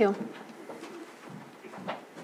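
A spoken word trails off with a falling pitch, followed by quiet meeting-room tone. A faint low murmur rises in pitch near the end.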